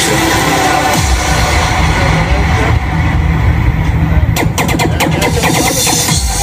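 Live electronic music played loud on stage: synthesizer parts over a heavy bass line that comes in about a second in, with a quick run of sharp percussive hits shortly before the end.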